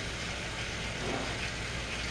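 Battery-powered TrackMaster toy train engine running along plastic track pulling two trucks: a steady motor whir with the rolling of the wheels.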